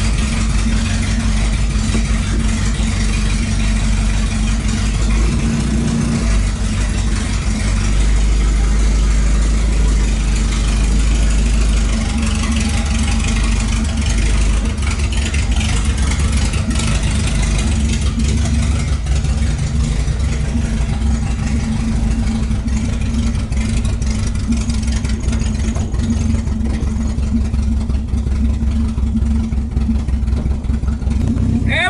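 VW Gol 'quadrado' engine running at idle just after a cold-morning start, heard from inside the cabin. The idle speed shifts a couple of times as the engine settles.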